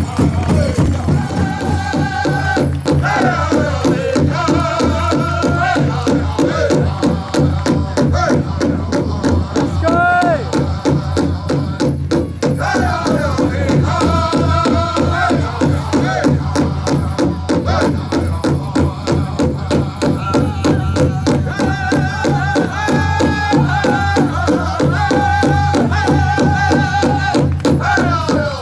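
Native American drum group accompanying the hoop dance: a large drum struck in a steady, even beat, with singers chanting in gliding, falling phrases over it.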